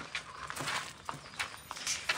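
A dog stirring in a wire-mesh kennel: scattered short scrapes and clicks as it moves and rises against the mesh.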